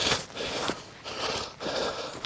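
A person out of breath from running, panting hard in a steady rhythm of about two breaths a second, with faint footfalls on dry ground.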